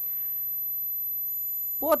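Steady background hiss with a faint hum, with no distinct sound events in it; a man's voice starts right at the end.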